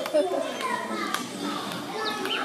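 Children's voices in the background: a schoolyard's mix of kids talking and playing, with a few light clicks.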